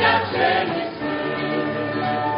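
Mixed choir of men's and women's voices singing a Romanian hymn, holding long notes, accompanied by a strummed acoustic guitar.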